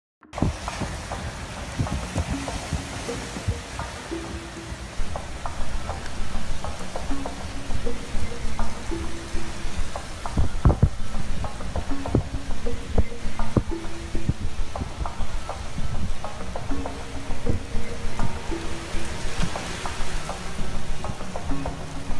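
Hurricane-force rain and wind, heard as a steady rushing hiss with frequent gusty knocks. Music with a simple line of short, low repeated notes plays over it. It all gets louder about four seconds in.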